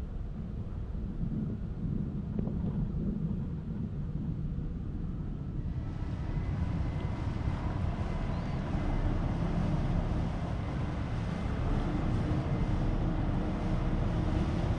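Wind rumbling on the microphone over steady waterfront background noise. A fuller hiss comes in about six seconds in and holds to the end.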